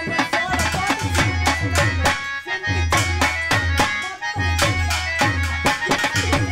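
Live Telugu folk music for a jamukula katha stage show: hand drums beat a fast, driving rhythm of deep and sharp strokes under steady held melody notes.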